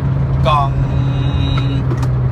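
Turbocharged four-cylinder engine of a manual Honda Jazz (GK) heard from inside the cabin, droning steadily under load while cruising at about 4,000 rpm.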